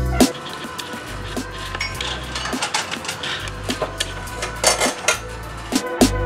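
Clinks, taps and scrapes of cookware and utensils on a pan and a plate, heard over quieter background music.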